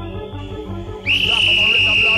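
1990s rave dance music from a DJ mix with a steady pounding bass beat. About a second in, a loud, shrill high whistle note cuts in and holds for over a second.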